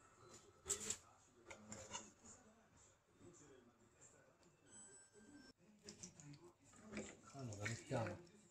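Very quiet, with a man's voice murmuring faintly and one sharp click of a kitchen utensil being handled just under a second in.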